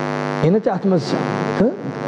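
A man's voice holds one long, steady note that breaks off about half a second in. He then goes on speaking fast and forcefully in a sermon.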